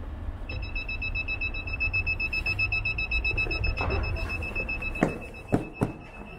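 An electronic entry buzzer sounds as the shop door is opened: a high, steady, rapidly pulsing beep starts about half a second in and keeps going. A few sharp knocks come near the end.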